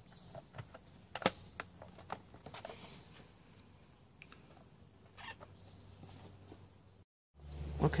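Handling noise from a drone remote's plastic housing as its two halves are fitted together: scattered light clicks and knocks, the sharpest about a second in. The sound drops out briefly near the end.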